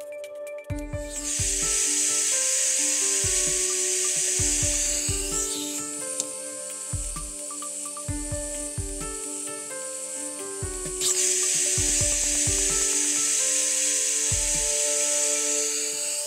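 Pressure relief valve venting compressed gas with a loud, steady high hiss. About six seconds in the hiss drops sharply as a quick-connect vent hose is pushed onto the valve outlet and carries the gas away, and about eleven seconds in it comes back at full level when the hose is pulled off.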